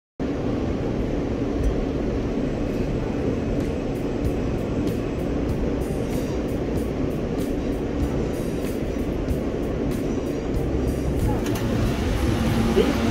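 Steady running rumble and hum inside a New York City subway car as the train pulls into a crowded station, with music playing over it.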